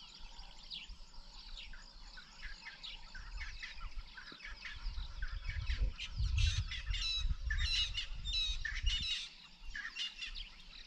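Birds calling in a busy chorus of short, quick chirps and falling notes, growing louder past the middle, over a low rumble.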